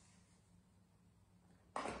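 Near silence: room tone with a faint steady low hum. A voice starts near the end.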